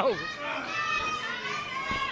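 Crowd noise at a small wrestling show: spectators chattering and calling out, with children's high voices standing out.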